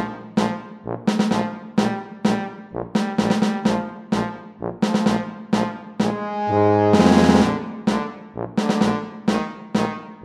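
Brass-ensemble play-along backing track: short, detached chords in a steady rhythm, with a louder held chord and a bright crash about seven seconds in.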